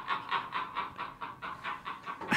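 Men laughing hard and nearly silently, in breathy gasping pulses about five a second that grow a little quieter.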